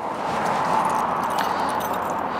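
A bunch of keys jingling in the hands, a few light metallic clicks, over a steady, even background noise.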